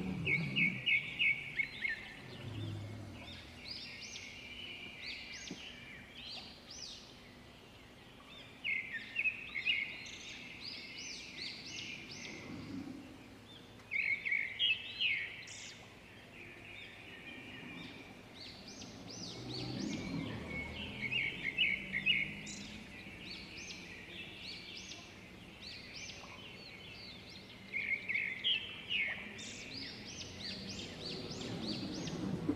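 A bird singing: a short burst of rapid chirping notes, repeated roughly every six seconds, five times, over steady outdoor background noise with faint low rumbles.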